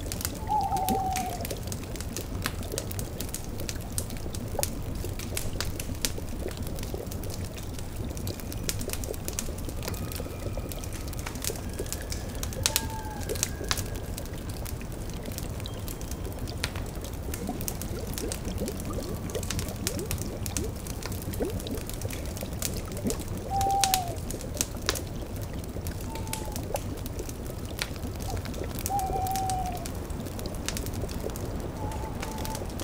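Sound-effects mix of a cauldron bubbling over a crackling wood fire. An owl hoots several times in short falling notes: near the start, about halfway through, and three times in the last seven seconds.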